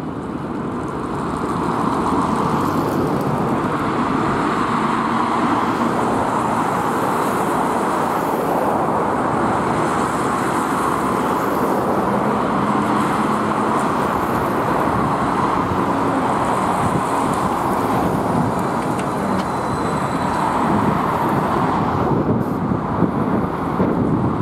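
Steady city road traffic, mostly tyres on asphalt, as a BKM-321 electric trolleybus approaches and pulls up, growing slightly louder near the end.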